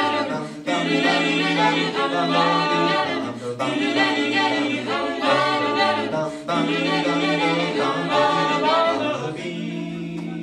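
Mixed a cappella vocal quintet, two women and three men, singing in close harmony in quick phrases with short breaks between them. Near the end the voices settle on a held chord that fades.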